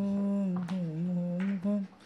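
A woman humming a slow lullaby tune in long, low held notes that dip and rise, breaking off near the end.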